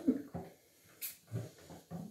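A person's soft, wordless murmurs and breaths in short bursts, with a sharp click about a second in.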